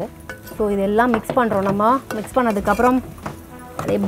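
A steel ladle stirring and scraping spiced vegetables in an aluminium pressure cooker, with sizzling from the hot pan and a few short metallic clicks. A woman's voice talks over most of it.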